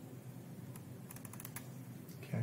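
A quick run of faint computer clicks, about eight in under a second, starting a little under a second in, over a faint low hum.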